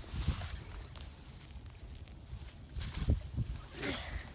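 Handling noise from a phone held against a jacket: fabric rubbing on the microphone with scattered rustles and clicks, and a couple of louder knocks about three seconds in and near the end.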